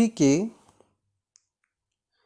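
Slow Hindi dictation: one word is spoken in the first half-second, then near silence broken by two faint clicks.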